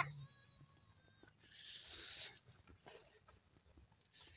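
Goats in a farmyard, mostly quiet: a faint high call in the first second, then a soft rustle of leaves about two seconds in as the goats browse a leafy bush.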